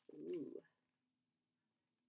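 A woman's voice making one short, low, rounded 'ooh' of about half a second, with a rise and fall in pitch. Near silence follows.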